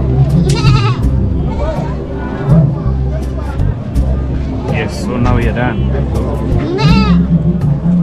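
A goat bleating, once about half a second in and again near the end, over steady background music and voices.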